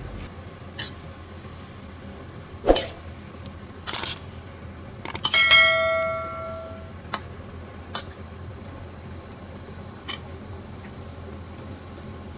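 A metal skimmer knocks against a stainless steel wok a few times while stirring broccoli in hot water. About five seconds in come a few quick clicks, then a bright notification-bell ding from a subscribe-button animation, ringing for about a second and a half.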